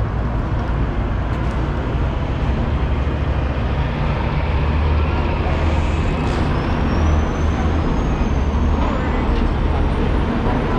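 Street traffic with a semi-truck's diesel engine rumbling past, its deep rumble heaviest through the middle. A faint high whine rises slowly over the last few seconds.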